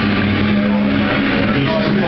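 Loud bar ambience: music playing over crowd chatter, with a steady low held tone through the first second or so.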